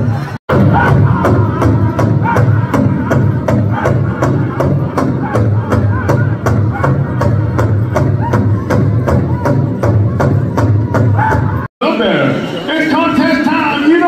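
Powwow drum group: a big drum beaten in a fast, even beat of about four strokes a second, with the singers' voices above it. The song cuts off abruptly just before the end, and a man's voice speaking follows.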